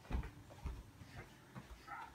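Soft footsteps on carpet: a few faint low thumps about half a second apart in a quiet room.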